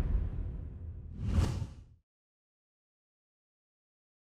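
A logo-sting whoosh sound effect with a deep low rumble dies away, then a second, shorter whoosh swells and fades about a second and a half in. Dead silence follows from about two seconds in.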